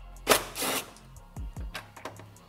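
Background music with a beat, and about half a second in, a brief burst of a cordless power driver spinning out a screw.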